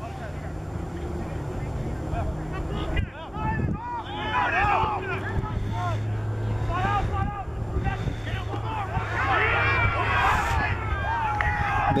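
Several voices shouting outdoors, many short calls overlapping, over a rumble of wind on the microphone. The shouting thickens from about four seconds in and is busiest toward the end.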